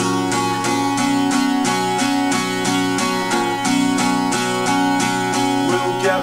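Steel-string acoustic guitar strummed in a steady rhythm, about three strums a second, ringing chords with no singing over them.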